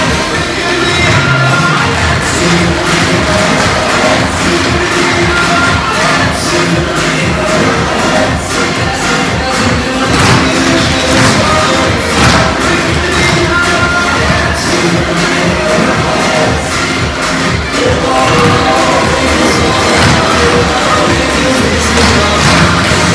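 Loud recorded music playing, with the rapid clicking of many tap shoes striking a hard floor together.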